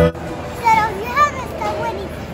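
Background music breaks off at the very start, then a young girl's high-pitched voice makes a few short utterances that slide up and down in pitch over about a second, against steady background noise.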